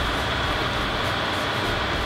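Steady background room noise: an even hiss and low rumble with a faint high steady tone, with no distinct events.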